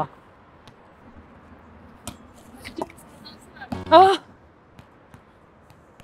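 A volleyball on a hard outdoor court, giving a few short, light thumps about two and three seconds in as it is set and bounces.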